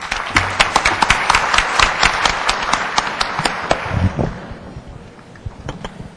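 Audience applauding, a dense patter of clapping that dies away about four to five seconds in.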